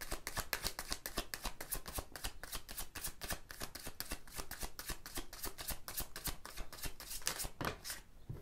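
A tarot deck shuffled by hand: a quick run of card-on-card flicks, several a second, with a couple of louder strokes near the end.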